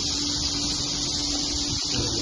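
Dense, steady high-pitched twittering of a large flock of swiftlets flying inside a concrete swiftlet house, with a faint low hum underneath.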